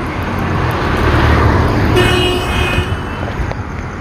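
Road traffic passing close by: a vehicle goes by with a rumble that swells and fades, and a horn sounds for about a second in the middle.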